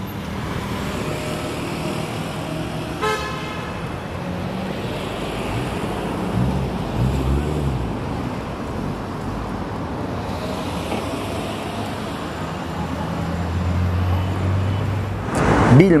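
City street traffic, with motor vehicles passing steadily. A car horn gives one short toot about three seconds in, and a low engine rumble swells near the end.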